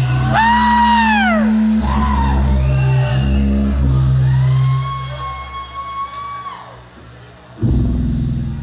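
Live rock band intro: upright bass holding long low notes under high, swooping electric guitar notes that slide up and then fall in pitch, one held note falling away near the middle. The full band crashes in loudly just before the end.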